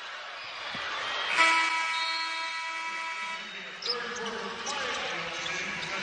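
Arena game-clock horn sounding for about two seconds, starting about a second and a half in, signalling the end of the first half.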